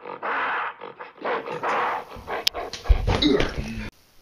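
Animal-like growls and snarls in a run of short, harsh bursts, followed by low rumbling with a few sharp knocks that cuts off suddenly just before the end.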